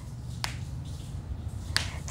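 Two short, sharp clicks, one about half a second in and a second one near the end, over a low steady hum.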